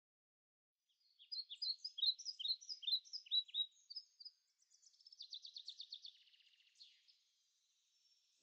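A small songbird singing: a series of short, high, falling chirps starting about a second in, then a quick trill of rapid repeated notes about five seconds in, which fades out before the end.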